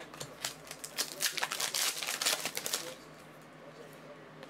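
Foil wrapper of a trading-card pack torn open and crinkled, and the cards slid out: a quick run of crackles and clicks, busiest between one and three seconds in, then settling.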